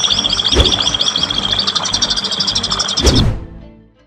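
A fast, even run of high bird chirps, about eight a second, over background music, with two brief sweeping transition sounds. It all fades out near the end.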